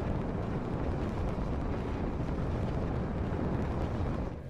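Steady low rumble, a sound effect for the space shuttle orbiter's re-entry through the atmosphere.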